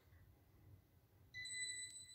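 A high, steady ding-like tone starts suddenly just past the middle and holds for over a second, with a single click near the end, played through a television speaker.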